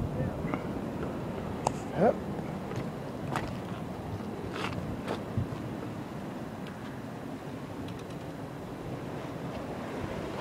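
Surf washing and breaking against the rocks at the foot of a harbour breakwater, a steady rushing noise with a few faint clicks.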